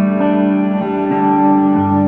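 Electric guitar loop played through a guitar speaker cabinet loaded with Celestion 70/80 speakers: sustained chords with effects, the notes changing every half second or so.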